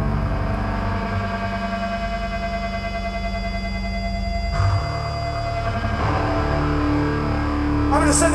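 Amplified distorted electric guitar and bass sustaining a held chord through the stage PA. About halfway through it changes abruptly to a low droning note.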